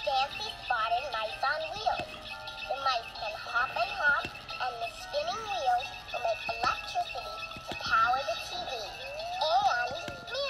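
A children's TV jingle with voices singing over music, played back from a screen's speaker.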